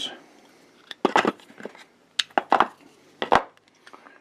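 Steel machinist jack parts being handled in their wooden box: several sharp clinks and knocks as the pieces are lifted, knocked together and set down, the first few about a second in.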